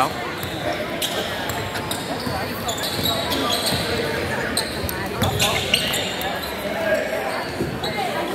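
A basketball being dribbled and bounced on a hardwood gym floor, with short high sneaker squeaks scattered through, over a steady murmur of voices in a large echoing gym.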